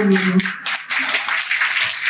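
A woman's sung phrase ends on a held note about half a second in, and audience applause follows.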